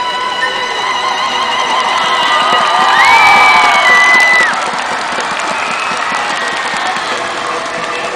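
A live concert crowd cheering and shouting at the end of a song. About three seconds in, a high held cry rises above the crowd for a second or two, the loudest moment.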